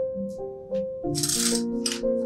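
Bundle of dry spaghetti rattling, its stiff strands clattering together as it is handled and lowered into a pot, in short bursts about a second in and again near the end. Soft instrumental music plays throughout.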